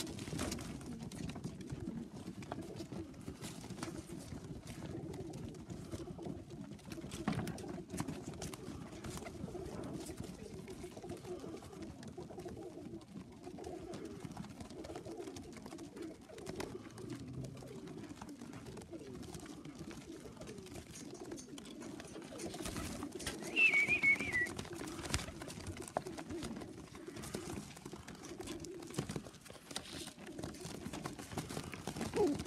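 A flock of tippler pigeons cooing continuously while feeding, with scattered taps and wing flutters. A brief high, wavering chirp about three-quarters of the way through is the loudest moment.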